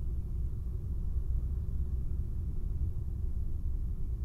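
Cockpit noise of a Cessna 172SP on short final: the four-cylinder Lycoming engine and propeller make a steady low rumble at reduced landing power.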